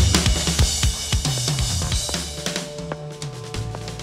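Metal band's drum kit, with low bass notes, playing the closing bars of a song. Repeated drum and cymbal strikes die away as the music fades down, leaving a few held notes near the end.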